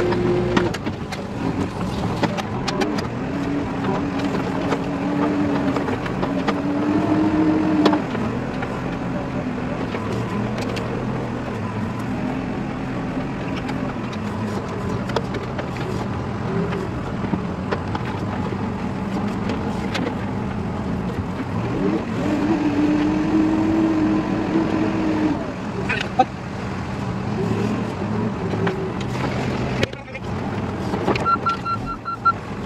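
Diesel engine of a heavy machine running, heard from inside its cab. The engine note rises and holds higher twice: from about three seconds in to eight seconds, and again around twenty-two to twenty-five seconds.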